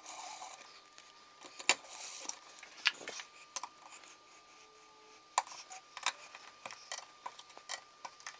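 Scattered light clicks and taps of a hand screwdriver turning the short screws that fix a thermostat base plate to the wall.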